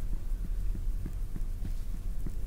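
Hands massaging a toe on creamed skin during foot reflexology: fingers pressing and rubbing, giving soft low thuds about three a second over a steady low rumble.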